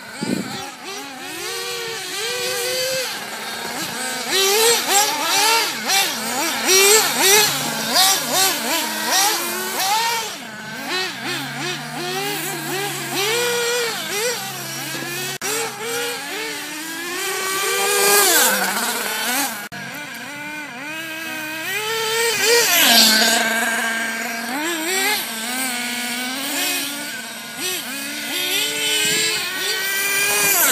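Small nitro engines of 1/8-scale RC buggies screaming as they race, their pitch rising and falling continuously with throttle and braking around the track, often two engines at once.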